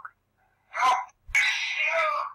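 African grey parrot vocalizing: a brief sound about a second in, then a louder, harsh call that starts about a second and a half in.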